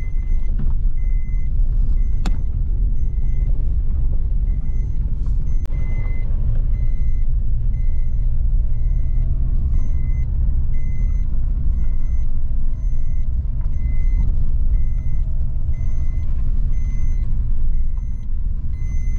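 Car moving along a rough gravel road: a loud steady low rumble of the car and its tyres on the rough surface. Over it a thin high beep repeats about twice a second.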